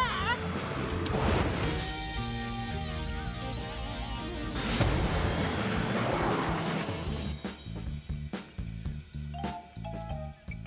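Lively cartoon background music, with two whooshing rushes of noise from soapbox carts racing past, about a second in and again near the middle.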